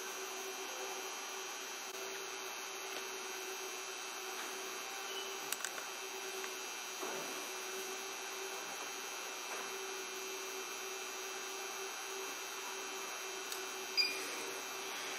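Steady electrical hum, one even tone over a faint hiss, with a few faint clicks near the middle.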